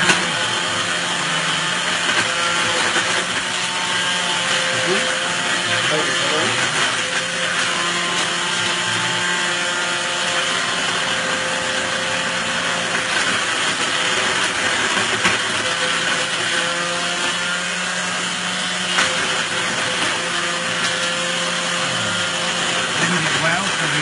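Countertop blender motor running steadily at full speed with a constant hum, blending ice cubes and vodka into a frozen cocktail.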